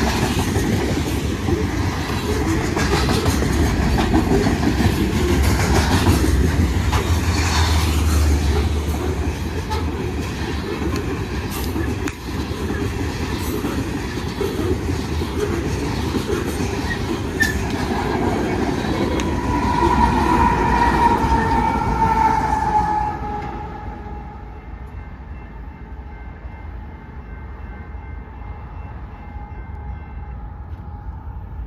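Loaded coal train's hopper cars rolling past at close range: a steady heavy rumble with wheel clatter and knocks over the rail joints. Near the end of the passing a high tone slides slightly downward. Then the noise drops off sharply, leaving a fainter steady ringing tone.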